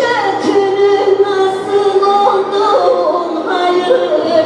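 Live band music led by an electronic keyboard, a sustained, gently wavering melody line over a continuous accompaniment.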